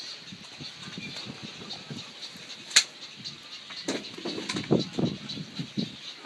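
Climbing a caged steel tower ladder: scattered knocks and clanks of feet and gloved hands on the metal rungs, with one sharp clank a little before the middle. A louder run of irregular low thumps and rumbles follows in the second half.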